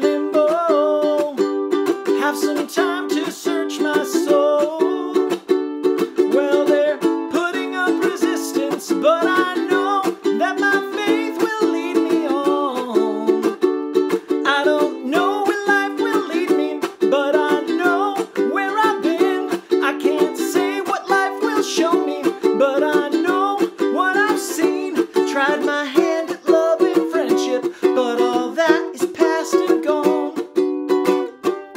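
Ukulele strummed in a steady rhythm, with a man singing a melody over it.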